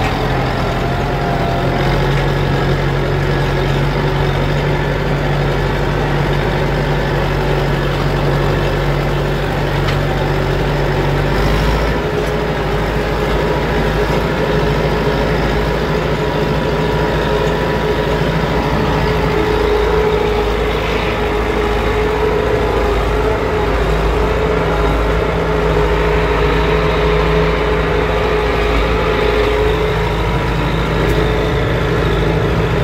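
IMT 577 DV tractor's diesel engine running steadily under heavy load as it pulls a three-shank subsoiler deep through the soil, heard from inside the cab. The low engine note shifts slightly about eleven seconds in.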